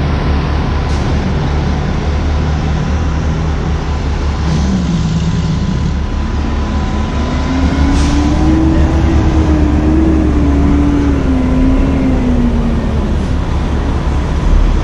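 Motorhome's gasoline engine running as the coach pulls slowly onto a truck scale, a steady loud rumble whose pitch climbs about halfway through and drops back near the end.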